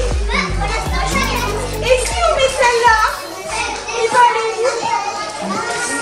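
Young children's voices chattering and calling out in a classroom, overlapping throughout, with a low rumble under them for about the first half.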